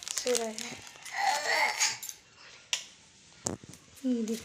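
A brief voice and a rustle, then the sharp click of a wall light switch being flicked on about three and a half seconds in.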